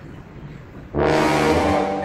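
Faint room noise, then about a second in a sudden loud, brassy horn blast lasting about a second: a sound effect added in editing.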